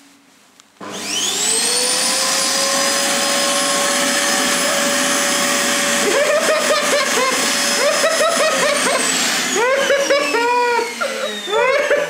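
Zanussi canister vacuum cleaner switched on about a second in, its motor whine rising quickly as it spins up and then running steadily and loud. It is drawing air through a liquid-filled glass bottle, and bubbling gurgles join it from about six seconds in.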